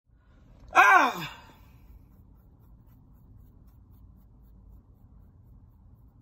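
A man's short wordless vocal sound, a sighing exclamation that glides up in pitch and then drops, about a second in. After it there is only a faint, low, steady hum of a car's interior.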